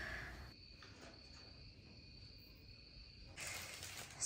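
Faint, steady high-pitched cricket trilling over quiet room tone, with a louder hiss setting in about three and a half seconds in.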